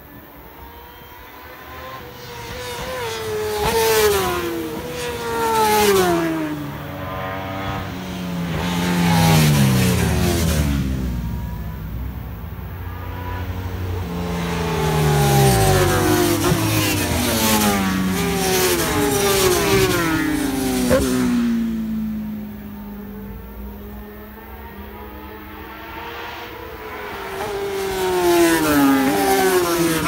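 Racing superbikes passing at speed one after another, their engine notes falling in pitch as each goes by, with the next bike's note rising as it approaches. A short sharp crack stands out a little past two-thirds of the way through.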